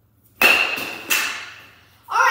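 A bat hits a baseball off a tee with a sharp crack and a brief ringing note, followed by a second, slightly quieter knock as the ball strikes something behind.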